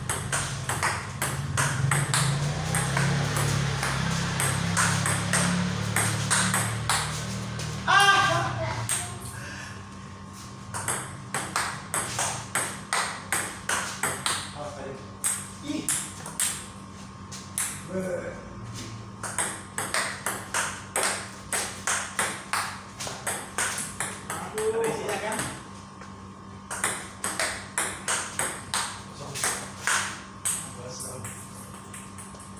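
Table tennis rally: the ping-pong ball clicking off the rackets and the table in a quick, regular beat of about two to three hits a second, with a short break near the end.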